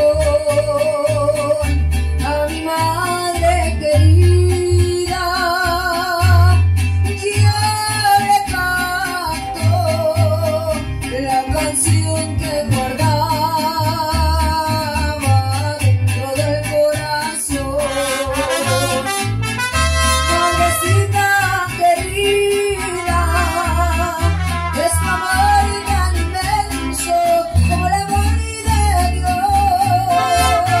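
Mariachi song: a woman sings through a microphone with a wide vibrato, over strummed vihuela and guitar with deep bass notes pulsing on the beat.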